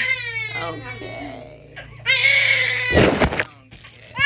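Baby crying hard in two long, high-pitched wails, the first falling in pitch, with a brief rustling noise near three seconds in.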